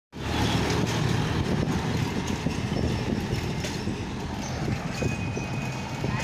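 Bicycle rolling along a paved road, heard from the handlebars: a steady rumble from the tyres and frame with small rattles and clicks. A faint high whine comes in near the end.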